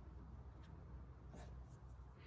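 Faint rustling and brushing of a white linen altar cloth, the corporal, as it is unfolded and spread flat on the altar. There are a few soft rustles in the second half, over a low steady room hum.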